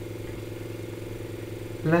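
A steady low background hum at one unchanging pitch, with several evenly spaced tones stacked above it. A spoken word begins at the very end.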